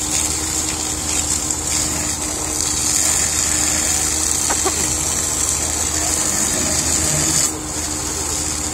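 Water from fire hoses hissing steadily as it is sprayed onto a burning vehicle wreck, over a steady engine hum. The hiss eases about seven and a half seconds in.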